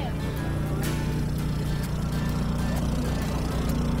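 A portable generator's engine running at a steady low hum, powering a food truck.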